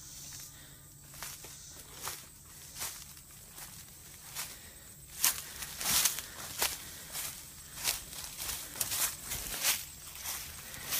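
Footsteps crunching through dry leaf litter and brush at a walking pace, getting louder about halfway through.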